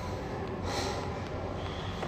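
A man's short, sharp breath through the nose a little over half a second in, over a steady low hum.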